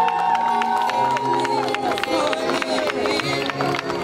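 Music playing over a crowd of wedding guests cheering and clapping as the couple walks up the aisle.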